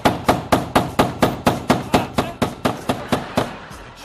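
Hammer driving a nail into a wall with quick repeated blows, about four to five a second, which stop shortly before the end.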